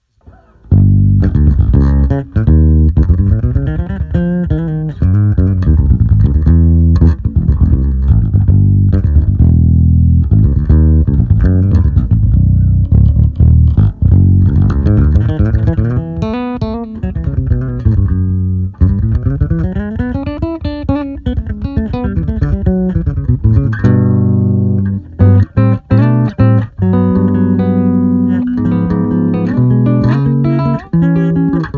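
Electric bass played through a Zoom MS-60B multi-effects pedal set to imitate an Eden WTDI preamp: a continuous, loud bass line starting under a second in, with notes sliding up and down the neck and quick repeated notes later on.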